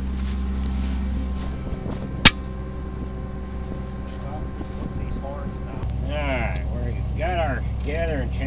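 An engine idling steadily in the background, with one sharp metallic clack about two seconds in. In the last two seconds come several short squeaky rising-and-falling sounds.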